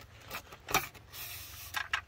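Old number 10 wire being pulled out of a conduit with pliers: a couple of sharp clicks, then a rasping rub for under a second as the wire slides out through the fitting.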